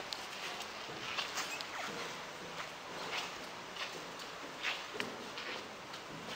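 Footsteps on a wooden floor and down a staircase: irregular short clicks, about one or two a second, over a steady room hiss.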